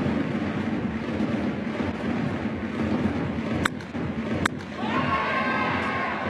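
Baseball stadium crowd noise with a low rumble, broken by two sharp cracks a little under a second apart in the middle, one of them the bat striking the ball. The crowd rises into cheering in the last second.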